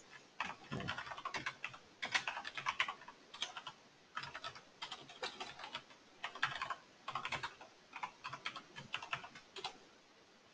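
Computer keyboard typing in short bursts of rapid keystrokes with brief pauses between them.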